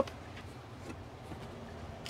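Quiet background hiss with a few faint ticks as the 2024 Kia Carnival's folding third-row seat back is pulled upright by hand.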